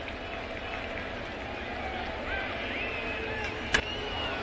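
Ballpark crowd murmur with faint distant voices, and a single sharp crack of a bat hitting the ball near the end.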